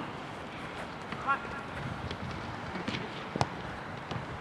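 Sounds of a football game in play: a brief distant player's shout about a second in, and a sharp knock of the ball being kicked near the end.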